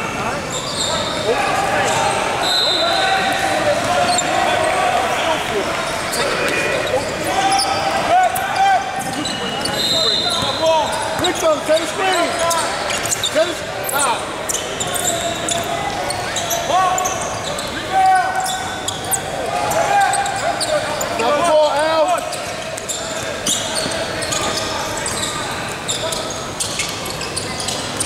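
Basketball game on a hardwood gym floor: a ball bouncing and dribbling with many short knocks, under overlapping voices of players and onlookers that echo in the large hall.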